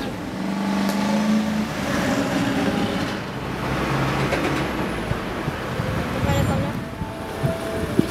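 Road traffic on a city street: a steady wash of passing cars, with an engine hum standing out in the first second or so.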